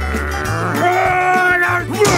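A cartoon character's drawn-out, frustrated vocal sound, held on one pitch and then sagging near the end, over background music with a steady bass line.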